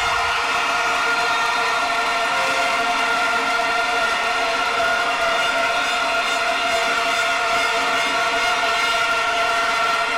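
A sustained synthesized chord of steady held tones with no beat or bass, as outro music over the closing cards.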